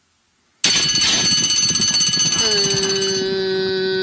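Racecourse starting bell ringing loudly as the starting gate opens for a horse race, cutting in suddenly under a second in and ringing for about two and a half seconds. The race caller then comes in with one long held opening call announcing that the field is off.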